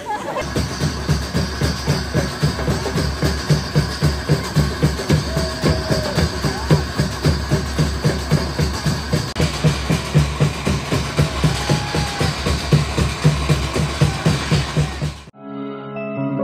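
Background music with a steady drum beat, which cuts off abruptly about a second before the end.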